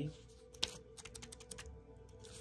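Light clicking: one click, then a quick run of about half a dozen clicks half a second later, over a faint steady hum.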